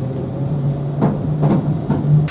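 Steady low hum of a car heard from inside its cabin as it drives slowly.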